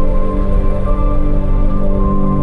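Background music: slow, sustained chords in a soft new-age style.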